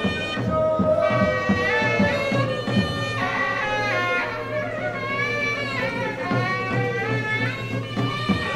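Traditional Ladakhi folk music for a dance: a held melody line bending in pitch over a steady rhythmic beat.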